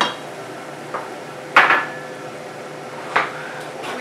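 Wooden spoon knocking and scraping against a stainless steel pot while stirring rice: four sharp knocks, the loudest about one and a half seconds in with a short metallic ring.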